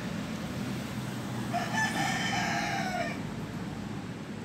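A rooster crowing once, a single pitched call about a second and a half long starting midway through.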